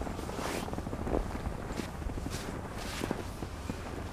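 Footsteps crunching through snow, coming irregularly about every half second.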